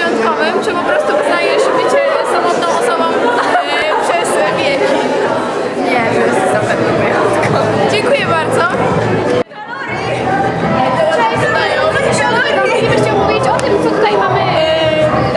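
Chatter of several voices talking over one another in a large room. The sound drops out suddenly about two-thirds of the way through, and more voices follow.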